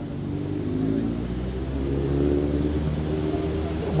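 Low engine hum of a motor vehicle running nearby. It swells a little towards the middle and eases off again.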